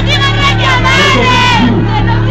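Concert crowd shouting and singing together over a steady, loud backing beat, picked up by a phone's microphone.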